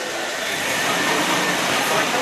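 Red Volvo 240 estate car creeping slowly forward with its engine running, a steady noise under faint crowd chatter.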